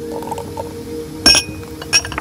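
A glass vessel clinks sharply against something hard with a short ring about a second in, and gives a lighter clink near the end, over steady background music.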